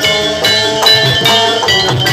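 Jaranan music in the Javanese gamelan style: ringing struck metal keys and bells over hand drums in a steady beat.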